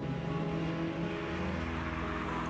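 Honda Accord coupe driving up the street toward the listener, its engine and tyre noise growing toward the end.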